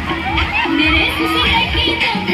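A crowd of children shouting and shrieking over loud music that has a steady bass beat about twice a second.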